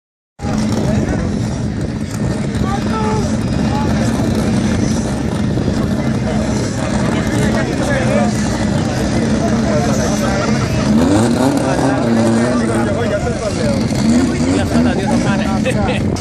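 Steady drone of race-car engines idling at a drag strip's start line, with people talking over it.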